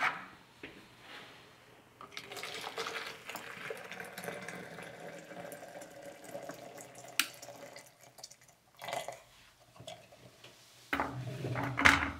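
Boiling water poured into a plastic measuring jug, a steady pour lasting about five seconds, while 600 ml is measured out. A few knocks and handling sounds follow near the end.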